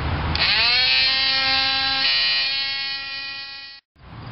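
Small hand-held electric sander starting up and running while sanding the edge of a freshly hole-sawn hole in a fiberglass boat hull. Its whine rises in pitch for about half a second, holds steady, and cuts off suddenly near the end.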